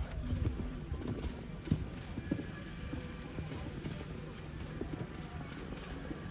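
A horse cantering on arena sand, its hoofbeats landing as irregular low thuds.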